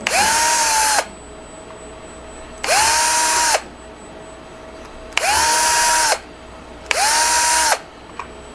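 Electric drill with a small 2.4 mm bit running in four short bursts of about a second each, every one spinning up, holding speed and winding down, as it drills pilot holes through 3D-printed plastic.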